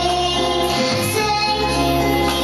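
A slow song with a high singing voice holding long notes over a steady, sustained accompaniment.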